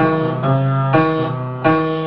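Instrumental piano music: slow, sustained chords, with a new chord struck about a second in and another shortly after.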